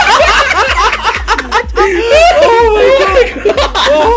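Two people laughing hard together, loud overlapping giggles and snickers that go on through the whole moment.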